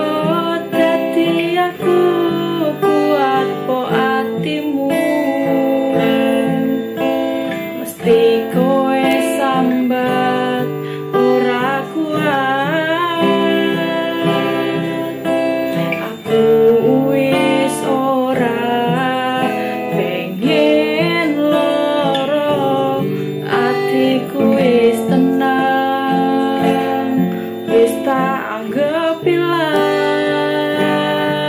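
A woman singing a Javanese dangdut song in Javanese over her own strummed acoustic guitar, the strumming keeping a steady rhythm beneath the melody.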